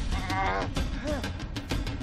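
Dramatic film score music with sharp percussive hits, and a wavering, drawn-out vocal wail near the start lasting about half a second.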